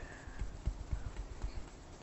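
Oil paint being mixed on a palette, the tool knocking softly against the palette in a series of short taps, a few each second.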